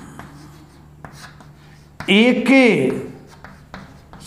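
Chalk writing on a chalkboard: short, faint scratching strokes and taps as a line of script is written. A man's voice breaks in for about a second midway.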